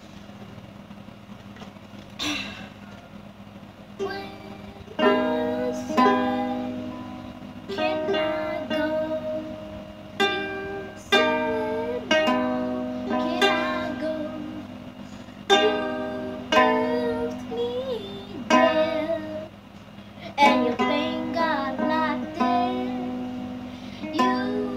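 Ukulele strummed in chords, sparse for the first few seconds and then about one strum a second, each chord ringing on between strokes.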